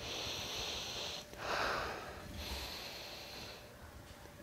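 A man sniffing deeply through his nose while wearing a black disposable face mask, smelling it for odour: three long, hissy breaths in a row.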